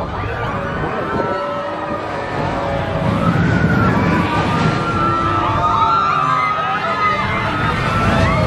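Riders of the RC Racer shuttle coaster screaming together as the car swings down the U-shaped track and past, over the low rumble of the car on the rails. The screams build a few seconds in and carry on as the car climbs the far side.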